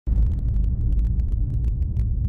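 Title-sequence sound effect: a loud, steady deep rumble with many small sharp ticks scattered through it.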